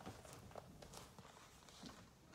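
Near silence with a few faint, soft clicks and rustles of a hardcover picture book being handled.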